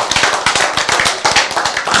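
A roomful of people clapping: dense, irregular applause that stops as speech resumes at the end.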